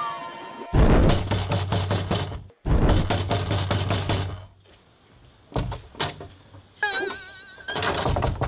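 Background film music with knocking on a wooden door: two loud stretches of rapid blows in the first half, then a few lighter knocks.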